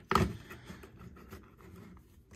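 Plastic parts of a Transformers Megatron H.I.S.S. Tank toy clicking and rubbing as hands fold its arms into place. There is a louder click at the very start, then scattered faint clicks.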